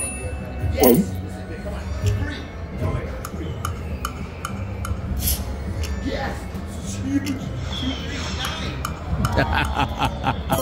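Rich Little Piggies video slot machine spinning its reels about three times in a row, with clinking, chiming game sounds over its steady music and sharp clicks as the reels stop.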